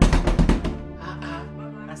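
A hand knocking hard and fast on a closed door: a rapid run of loud knocks lasting under a second, heard over background music.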